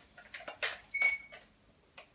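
A few light knocks and one short, ringing metallic clink about a second in, from the metal parts of an old Hoover vacuum cleaner being handled and refitted.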